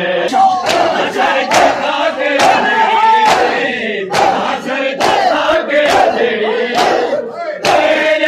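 Matam: a crowd of men striking their chests with their open hands in unison, about one strike a second, with many men's voices loudly chanting and shouting between the strikes.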